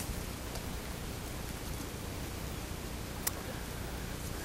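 Steady outdoor background hiss by a lakeshore, with one brief click about three seconds in.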